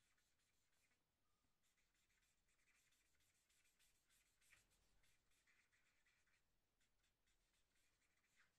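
Very faint scratching of a felt-tip marker colouring on paper: quick, repeated back-and-forth strokes, barely above silence.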